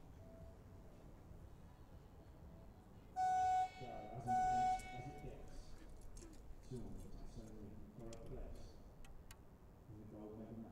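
Two short blasts of a field timing horn, each about half a second long, about a second apart: the archery range signal that calls the archers to the shooting line to begin the end.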